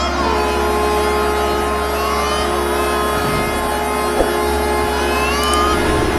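Diesel locomotive running with a steady low rumble and a long held two-note horn sounding over it. A few short rising tones come over the top, one near the start, one about two seconds in and one near the end.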